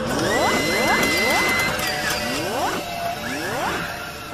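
Electronic intro music with synthetic sound effects: a series of quick rising sweeps, with a steady high tone held through the first half.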